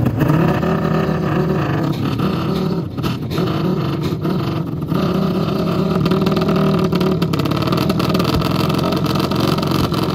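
Dirt bike engines revving on the start line of a drag strip, held high with small rises and dips in pitch as the riders wait to launch.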